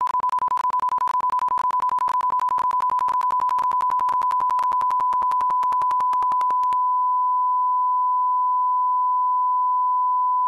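A 1 kHz line-up test tone plays at one steady pitch. It is the reference tone laid with colour bars so audio levels can be set. Rapid small clicks crackle through it until about seven seconds in, and then it runs clean.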